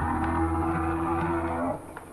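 Sound-designed Diplodocus call: one long, low bellow with many overtones, held steady and then cutting off near the end.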